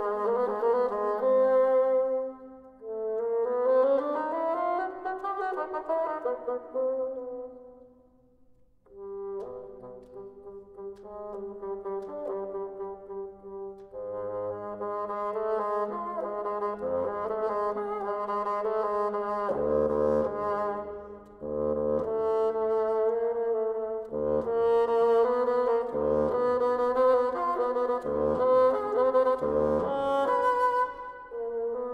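Bassoon playing a cadenza, with rising and falling pitch glides in the first few seconds. After a brief near-pause about eight seconds in come held notes and quick low notes, growing louder toward the end.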